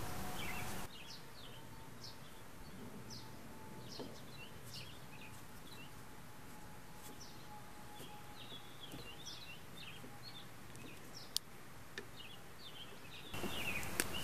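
Wild birds chirping in the background, with many short, high calls scattered throughout over a low outdoor hiss. There is one sharp click late on.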